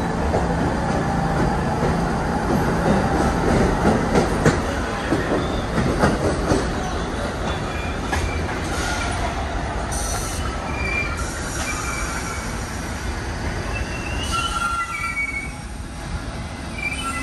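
New York City subway trains running through the station: a steady rumble of steel wheels on rail, with sharp clacks over the rail joints in the first half. High wheel squeals come in over the last few seconds.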